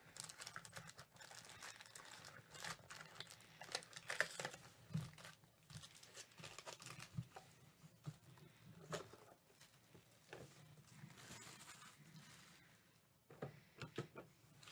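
Faint, irregular crinkling of foil trading-card packs as they are pulled out of the box and handled.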